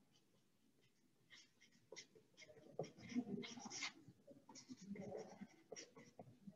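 Faint scratching of a felt-tip marker on paper, in a run of short strokes as words are written out, starting about two seconds in.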